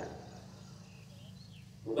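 A pause in a man's speech into a microphone: a faint, steady low hum with a few faint, short high sounds in the background. His voice comes back at the very end.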